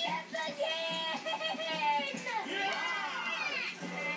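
Cartoon characters' voices yelling and cheering over a television's speaker, several high-pitched shouts sliding up and down in pitch, with a long swooping yell past the middle.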